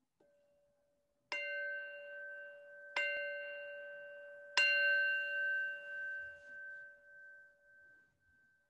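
A singing bowl struck three times, about a second and a half apart, each strike ringing on over the last and the ring wavering as it slowly fades: the signal that opens a period of breath meditation.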